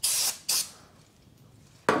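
Aerosol spray can hissing in two short bursts onto the hub face of a new brake disc, clearing debris before the wheel goes on. A sharp knock comes near the end as the can is set down on the metal ramp.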